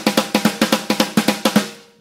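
Electronic drum kit's snare pad played in swung sixteenth notes, with a lilting long-short feel at about seven to eight strokes a second. The run stops about one and a half seconds in and rings out briefly.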